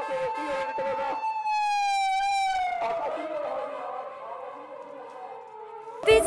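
An emergency vehicle's siren holding one high tone, then sliding slowly lower and fading as it moves away.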